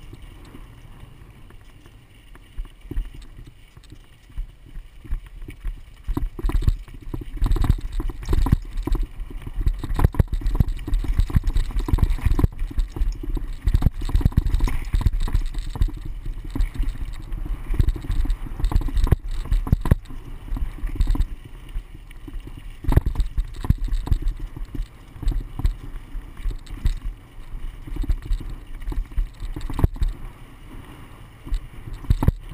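Mountain bike rattling and knocking over a rough dirt trail at speed, with wind rumbling on the microphone. It gets louder and busier from about six seconds in and eases off near the end.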